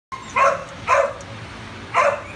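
A dog barking: two short barks about half a second apart, and a third right at the end.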